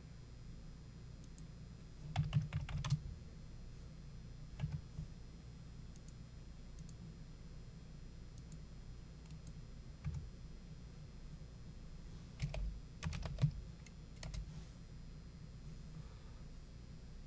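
Computer keyboard being typed on in short bursts of a few keystrokes, about two seconds in and again from about twelve to fourteen seconds in, over a faint low hum.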